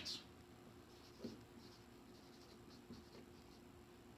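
Faint squeak and scratch of a dry-erase marker writing on a whiteboard, with two light taps, one about a second in and one about three seconds in.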